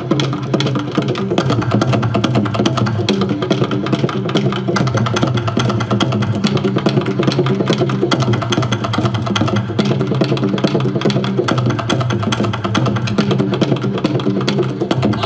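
Ensemble of Korean barrel drums on stands beaten with sticks in a fast, dense, continuous rhythm, with a steady low hum beneath the strokes.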